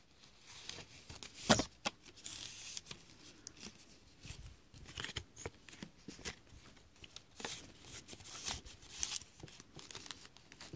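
Palm leaf strips rustling, creaking and clicking as they are handled and worked through the weave, layer by layer. The loudest is a sharp crack about a second and a half in.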